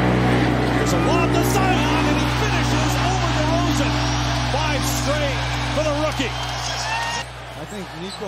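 A low sustained bass chord from background music fades out near the end, under the faint speech of a TV basketball commentator and arena crowd noise.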